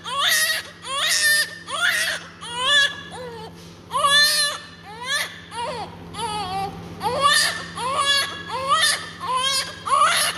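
Newborn baby minutes after birth crying in short, pitched cries that come about once a second, each rising and falling, with a steady low hum underneath.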